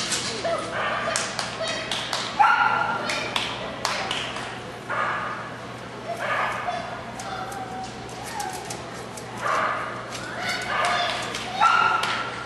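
A dog barking in short, repeated barks, mixed with a person's short shouted calls, in a large indoor arena.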